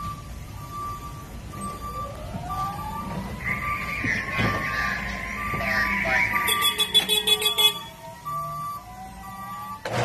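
Forklift warning beeper sounding at an even pace, roughly three beeps every two seconds, over background music.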